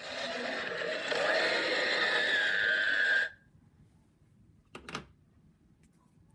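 A cartoon monster's loud roar played through a television's speakers, lasting about three seconds and cutting off abruptly, with a high strained tone riding over it. A short knock follows about five seconds in.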